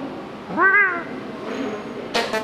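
A single cat meow about half a second in, its pitch rising and then falling.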